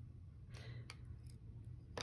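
Faint handling of felt-tip markers over a paper sheet on a desk: a short rustle about half a second in and a few light clicks, the sharpest one near the end.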